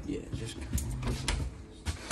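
An interior door latch clicking and the door being pushed open, with a few sharp knocks spread over the two seconds.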